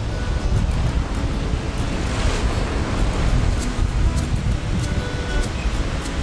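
Steady rush of wind and surf buffeting the microphone, under faint background music.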